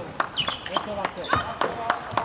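Table tennis rally in doubles: a plastic ball being struck back and forth, with sharp clicks off paddles and table about three times a second, and brief shoe squeaks on the court floor.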